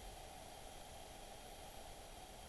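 Faint steady hiss with no distinct sounds: background noise of the recording in a pause between voices.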